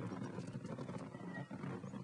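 Faint, low background soundtrack bed, steady with no distinct events.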